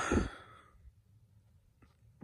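A man's heavy sigh, voiced at first and trailing off into breath within the first second, followed by quiet room tone with a couple of faint clicks near the end.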